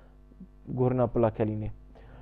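A man speaking briefly in the middle, over a steady low electrical hum that is heard plainly in the pauses before and after his words.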